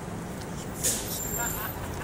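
Low, steady rumble of city street traffic, with a brief hiss a little under a second in.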